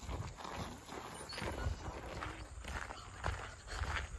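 Footsteps on a gravel walking track, an irregular run of short steps.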